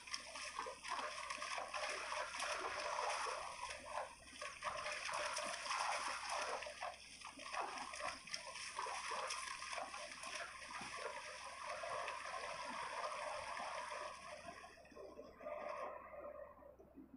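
Running water splashing and trickling like a stream, a steady rushing hiss with small swells that eases off near the end.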